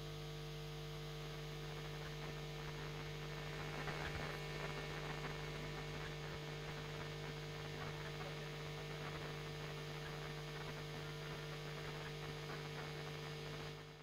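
Steady electrical mains hum on the press-room audio feed, with faint room noise under it; it cuts off at the very end.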